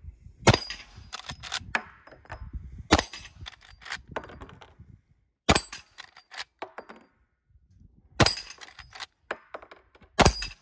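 Lever-action rifle fired four times, about two and a half seconds apart. Each shot is followed by a few smaller clacks as the lever is worked down and back to chamber the next round.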